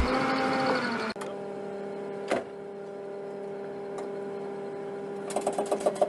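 A steady low mechanical hum, like a running motor, with a couple of faint clicks. A shorter wavering tone fades out in the first second.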